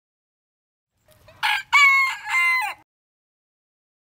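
Golden Sebright bantam rooster crowing once, a cock-a-doodle-doo in several parts, starting about a second in and lasting under two seconds.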